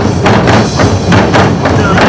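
Korean traditional drum ensemble striking barrel drums (buk) together in a steady rhythm, about four loud beats a second.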